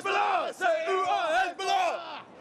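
Male protesters shouting slogans at the top of their voices, three loud shouted phrases in quick succession, with a crowd behind them.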